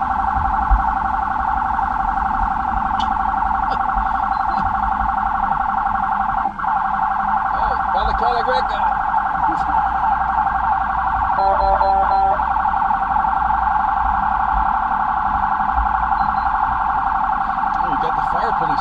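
Police siren running continuously in a fast warble. About eleven and a half seconds in there is a brief, steady horn-like blast of just under a second.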